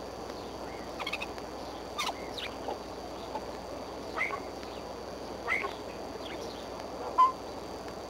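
Bald eagle giving a scattered series of short, high calls, about six in all, the loudest one near the end, over a steady low background hiss.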